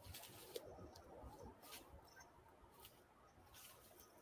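Near silence: a few faint scuffs and rustles, about one a second, from footsteps in forest leaf litter.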